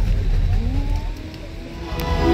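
Night-time show soundtrack over outdoor loudspeakers: a quieter passage of low rumble with rising, sliding tones. Near the end the music comes back in louder.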